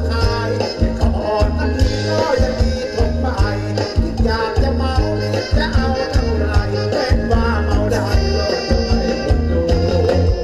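Thai ramwong dance music played by a band, loud, with a steady beat and heavy bass.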